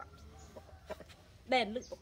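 Mostly quiet with faint chicken clucking in the background, then a woman speaks briefly about one and a half seconds in.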